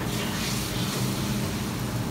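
Serabi batter hissing as it is poured into a small hot pan. A steady low hum runs underneath.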